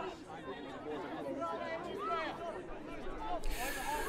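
Faint, distant voices of players calling and shouting across a sports pitch, with scattered chatter. A hiss comes in near the end.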